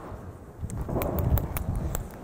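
Footsteps on a stage with a few sharp clicks and low thuds, picked up close by a lecturer's microphone as he walks.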